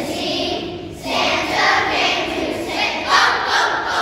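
A group of children singing together, with a short break just before a second in.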